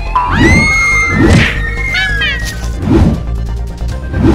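Cartoon soundtrack: background music with three heavy booming thuds, and high gliding wail-like cries, one rising and held in the first second and falling sweeps about two seconds in.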